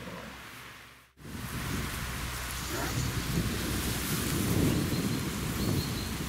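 Wind buffeting the microphone: a steady rushing noise with heavy low rumble, cutting in abruptly about a second in and swelling a little near the middle.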